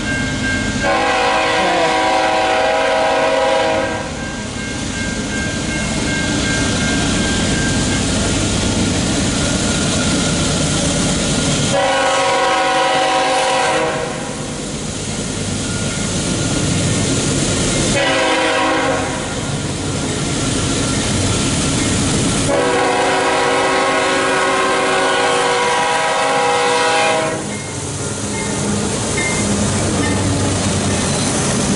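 CSX freight locomotive's air horn sounding the grade-crossing signal: two long blasts, a short one and a final long one, over the rumble of the approaching train. The locomotives reach the crossing near the end.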